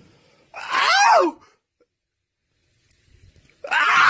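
A short, loud vocal outburst from a person, about a second long, its pitch rising and then falling. Near the end, a loud burst of noise.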